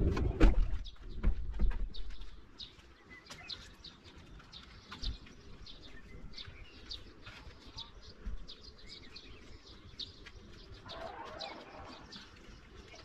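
A few knocks and thumps in the first two seconds, then small birds chirping and singing, many short high notes in quick, irregular runs.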